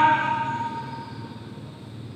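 A man's amplified voice ends and one held tone rings on, fading away over about a second. Low background noise follows.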